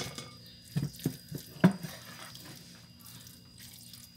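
Wooden spoon stirring raw ground beef into a wet marinade in a metal pan: wet squelching with a few sharp knocks of the spoon, the loudest about a second and a half in, then quieter stirring.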